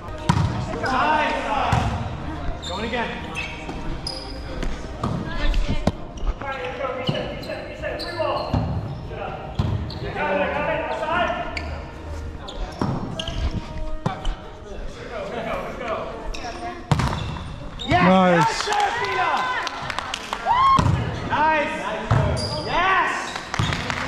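Indoor volleyball play in a gymnasium: sharp hits of the ball and players' footsteps on the hardwood floor, mixed with players' shouts and calls, all echoing in the large hall.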